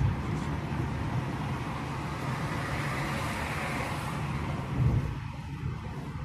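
A car driving slowly, heard from inside the cabin: a steady low engine and road rumble with tyre hiss that swells in the middle. There is a brief louder bump about five seconds in, after which the hiss fades.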